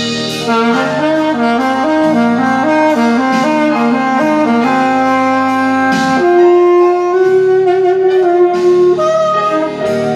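Mandalika alto saxophone playing a blues solo in E-flat over a backing track: a run of quick, short notes, then two long held notes in the second half.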